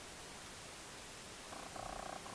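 Faint room noise while a person drinks from a metal travel mug, then a faint pulsing buzz near the end.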